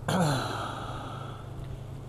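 A man clearing his throat close to the microphone: one sudden, loud sound right at the start that drops in pitch and fades away over about a second and a half.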